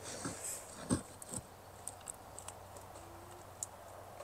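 A few faint knocks and scrapes from a metal rebar rod being pushed down into the soil at the corner of a wooden raised bed, beside a wire cattle-panel trellis. The loudest knock comes about a second in, with small ticks after it.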